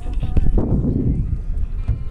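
Wind buffeting the microphone in a fluctuating low rumble, with faint voices underneath.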